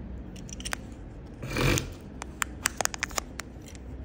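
Small cast amulets being handled: a short rustle about one and a half seconds in, then a quick run of sharp clicks of hard pieces knocking together.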